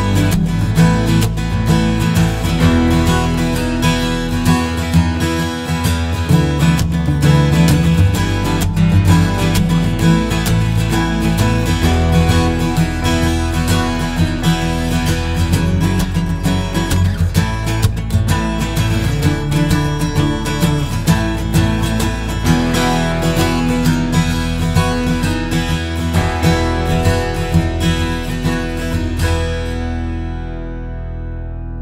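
Steel-string acoustic guitar tuned E-E-E-E-B-E, playing a continuous chordal passage with its strings ringing together; the last chord rings out near the end.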